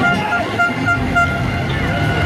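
Several motocross bikes' engines revving as a pack of riders races down the track, heard over crowd chatter.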